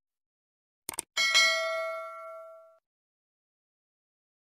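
A couple of quick mouse-click sounds, then a bright bell ding that rings on and fades over about a second and a half. This is the click-and-bell sound effect of a subscribe-button animation.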